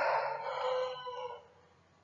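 A drawn-out animal call, fading away over about a second and a half.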